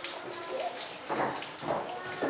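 Indistinct voices of onlookers with a crackly background hash, and two brief louder bursts of sound past the middle.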